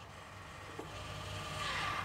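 The 12-volt electric actuator of an exhaust cutout butterfly valve faintly whirring as it opens, growing louder toward the end. It runs sluggishly and sounds like the battery is dying.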